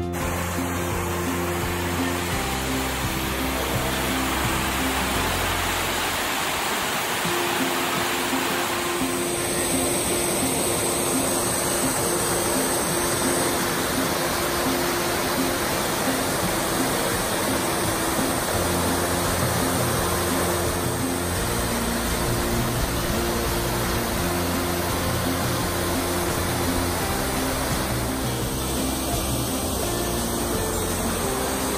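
Background music of slow, sustained low notes over the steady rush of falling water from a large fountain's spray.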